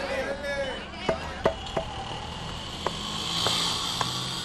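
Busy street ambience: steady traffic noise with background voices near the start. Several sharp clicks come through it, three in quick succession about a second in and a couple more later.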